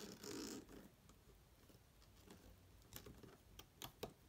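Faint handling sounds of a plastic loom hook and rubber bands on a plastic Rainbow Loom: a short rustle just after the start, then a few small clicks near the end.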